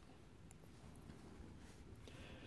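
Near silence: faint room tone with a few faint ticks as a pressure flaker is pressed against the edge of a stone drill.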